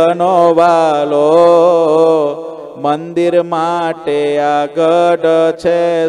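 A man chanting a Gujarati devotional verse, sung solo to a slow melody with long held notes and short breaks between phrases.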